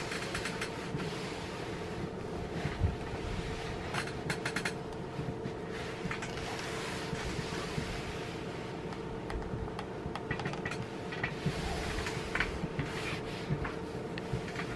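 A clothes iron pushed back and forth over dry, crumpled cotton muslin: soft recurring swishes of the soleplate sliding on the cloth, with a few light clicks, over a steady background hum.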